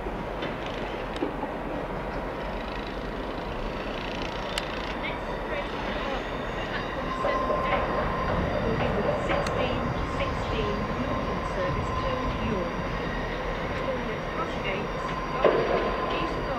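A Northern Class 158 diesel multiple unit running in over the station approach tracks, with train noise building from about halfway. A steady high squeal from the wheels on the curve sets in as it grows louder, along with a few clicks over the pointwork.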